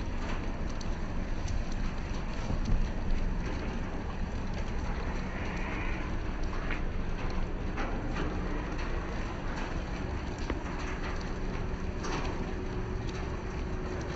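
Plush toys being dropped into a plastic wheelie trash bin, with a few soft knocks and rustles, the loudest about three seconds in, over a steady outdoor noise with a low hum.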